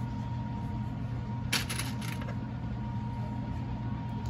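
A few light clicks and rustles from hands handling fleece and a plastic sewing clip, bunched together about a second and a half in, over a steady low hum.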